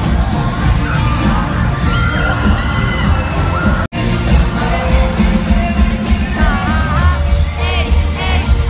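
Live pop-rock band in an arena, recorded from the crowd: heavy bass and drums under sung vocals, with the crowd's voices. About four seconds in there is an abrupt cut, then fans close by sing and scream along over the band.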